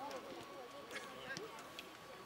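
Several men's voices chattering at once across the open pitch, none clear enough to follow, with a few sharp knocks between them.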